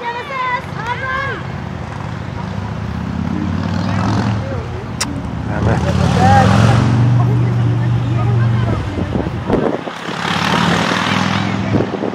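A motor vehicle's low engine rumble swells over several seconds, loudest a little past the middle, then fades away. Shouting from players and spectators comes over it at the start and here and there.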